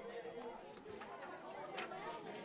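Faint, indistinct chatter of voices in a room, with a short click near the end.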